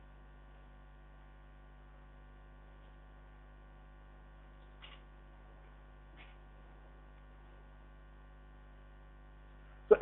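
Faint, steady electrical mains hum, with two faint short clicks about five and six seconds in.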